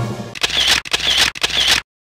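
Camera shutter sound effect, three shots about half a second apart. It cuts off to dead silence near the end.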